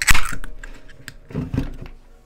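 A drink can's pull tab cracked open: a sharp snap and a short hiss of escaping gas that fades within about half a second.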